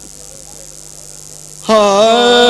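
Steady low electrical hum from the sound system, then about one and a half seconds in a man's amplified singing voice comes in loudly on a long held 'haa'.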